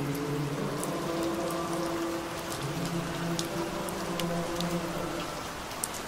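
Steady rain falling on a wet hard surface, with many separate drops pattering and ticking, and a faint low steady drone underneath.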